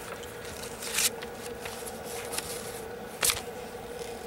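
Faint handling noises from hands moving solder wire over a circuit board: two short rustling scrapes, about a second in and again about three seconds in, over a steady low hum.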